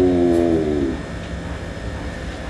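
A man's voice holding a long drawn-out vowel, the end of a hesitant 'então…', fading out within the first second. A pause follows with only a low background rumble.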